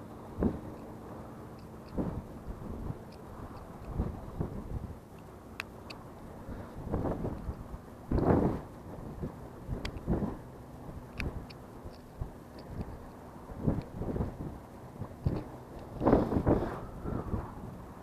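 Wind gusting on the camera microphone in irregular rumbling bursts, with faint scattered clicks from handling the fish grippers and tackle.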